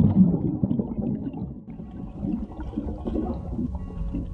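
Muffled underwater sound of churning water and bubbles, a low rumbling gurgle heard with the microphone below the surface of a swimming pool.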